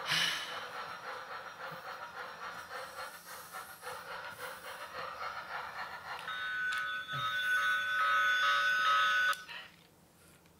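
Battery-powered toy train running on its plastic track, giving out a pulsing chugging noise and then, about six seconds in, a louder steady electronic whistle tone that cuts off suddenly about a second before the end.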